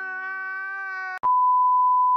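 A man's voice held in one long crying wail, cut off about a second in by a loud, steady single-pitch test-tone beep of the kind played over television colour bars.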